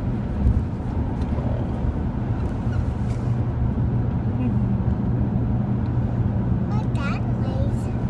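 Steady road and engine noise inside a moving car's cabin, a continuous low hum.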